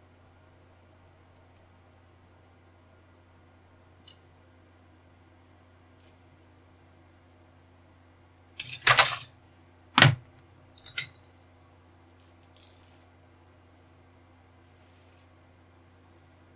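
Plastic model-kit parts sprue being handled and laid down on a cutting mat. A few light clicks come first, then two loud clattering knocks about halfway through, followed by several shorter plastic rattles.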